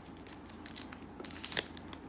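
Faint crinkling of foil Pokémon booster pack wrappers being handled, with a louder crackle about one and a half seconds in.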